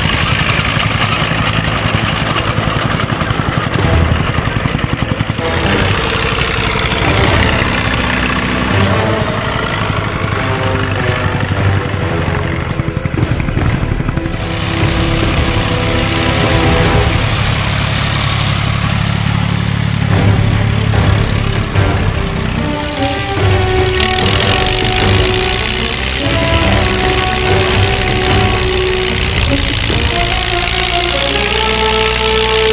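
Background music mixed with old tractor engines running as they pull ploughs through the soil.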